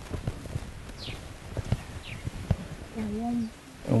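An outdoor lull with a few soft scattered clicks and knocks and two short falling bird chirps. About three seconds in comes a brief word in a higher, woman's voice.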